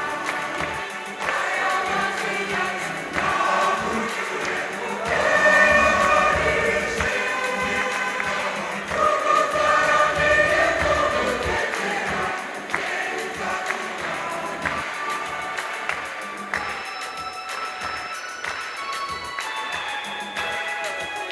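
Large mixed choir of women and men singing a gospel song, swelling louder through the middle and easing off toward the end, where a few long held notes sound.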